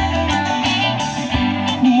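Live band playing an instrumental bit between sung lines: strummed acoustic guitar with an electric lead guitar and keyboards, over steady low bass notes.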